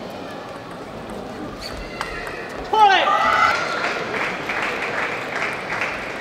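A sharp click of a table tennis ball at about two seconds in, then a loud shout falling in pitch about a second later, followed by crowd noise.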